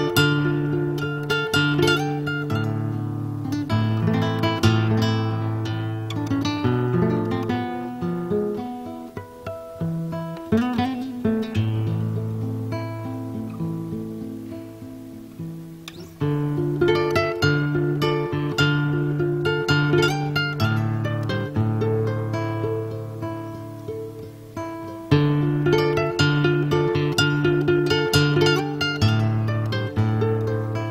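Solo acoustic guitar playing an instrumental passage of picked notes and chords. It softens in the middle, then comes back louder with strummed chords about halfway through and again near the end.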